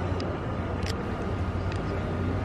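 Steady low urban rumble with a few sharp clicks of camera shutters, three in about two seconds.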